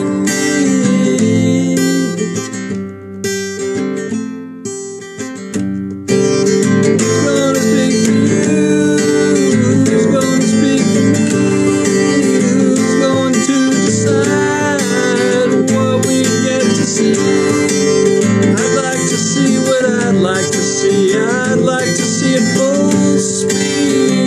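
Acoustic guitar strummed in chords, thinning to a few quieter ringing notes for a few seconds early on before full strumming picks up again.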